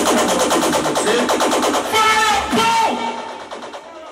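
Electronic music played loud over a sound system, with a fast, even stutter of beats in the first half, fading out near the end.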